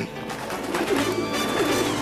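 Cartoon pigeon cooing a few times over background music.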